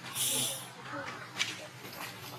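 A short, loud burst of hiss lasting about half a second near the start, followed by faint voices and a single sharp click about one and a half seconds in.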